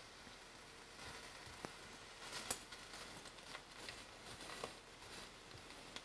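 Langoustine tails frying in a pan with a faint sizzle, the pan not quite as hot as it could have been. A few light clicks of metal tongs against the pan and tails as they are turned.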